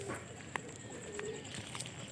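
Quiet outdoor ambience with a faint low bird call about a second in and a few light clicks.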